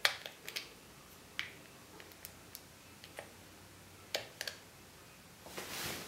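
Wii Nunchuk controller's buttons and thumbstick being pressed and worked in the hand: a dozen or so sharp plastic clicks at uneven intervals. A brief rush of noise comes near the end.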